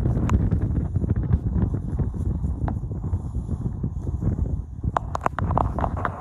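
Wind buffeting a phone's microphone in a steady low rumble, with a few sharp clicks and knocks near the end.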